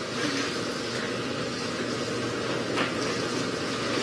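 Steady room noise in a large room: a low hum with a hiss over it, and a brief faint tap near the end.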